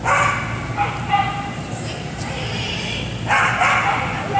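A dog barking in high-pitched yips, in short bursts at the start, about a second in, and a longer run near the end.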